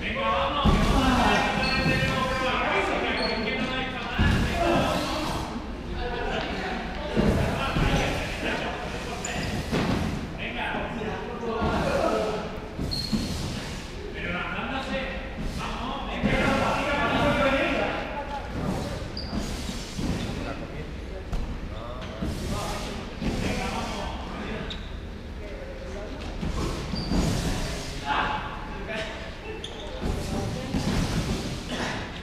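Indistinct voices of several players calling out, echoing in a large sports hall, over running footsteps and repeated thuds on the hard floor and gym mats.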